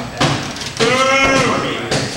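A thump, then a person's drawn-out vocal cry held for about a second, with another knock near the end.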